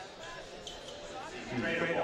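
Quiet high school gymnasium sound at a basketball game: faint scattered court and crowd noise, with voices starting up about a second and a half in.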